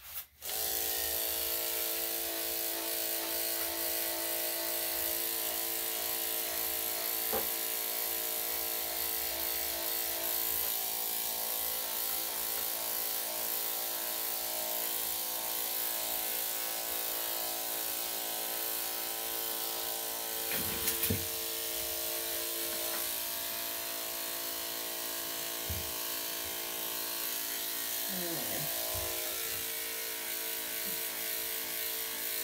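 Corded electric dog grooming clippers with a #7 blade switched on about half a second in and running steadily while clipping a matted coat, with a couple of brief small noises partway through.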